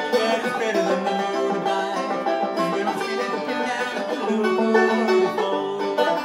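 Banjo played solo, a steady unbroken run of plucked notes with no voice over it.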